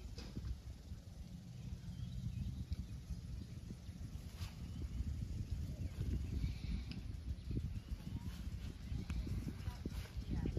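Low, uneven rumble of wind buffeting the microphone outdoors, with soft footsteps on grass.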